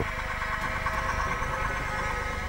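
Held synthesizer drone from a dramatic TV background score: several steady tones sounding together over a low rumble, with no beat.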